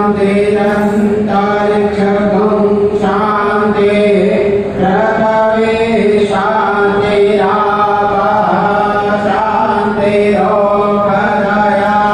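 Devotional chanting sung in long phrases over a steady low drone that holds the same pitch throughout.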